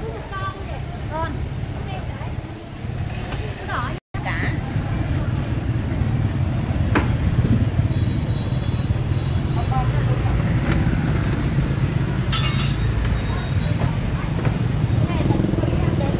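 Busy street-market ambience: background chatter of vendors and shoppers over a steady low rumble of motorbike engines. The sound breaks off for an instant about four seconds in.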